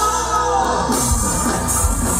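Live rock band playing, with electric guitar and a male voice singing.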